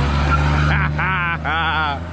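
A Chevrolet Monte Carlo SS Supercharged's supercharged V6 pulling away hard, with a loud rush of engine and exhaust noise in the first second. Its low, steady drone carries on under a person's voice near the end.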